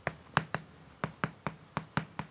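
Chalk writing on a blackboard: a quick run of sharp taps, about five a second, as each stroke of the characters strikes the board.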